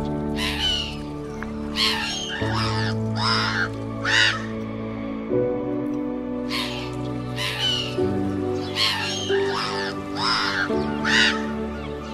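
Background music of slow, sustained chords that change every couple of seconds. Short crow-like calls recur in the same order about every six and a half seconds, looped as part of the music track.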